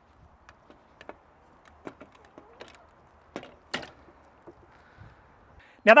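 Scattered light clicks and knocks as a mountain bike's frame is lifted onto and seated in the arms of a frame-mount bike carrier, with the two loudest knocks about three and a half seconds in.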